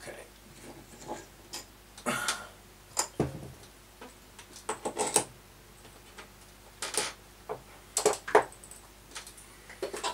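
Steel parts of a drill-press milling spindle adapter clicking and knocking as the assembly is taken apart by hand and the pieces set down on a workbench: scattered light clinks and taps, with a duller thump about three seconds in.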